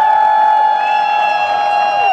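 Horns blown in long steady blasts as the crowd responds: one held note carries through, and a second, higher horn joins about a second in.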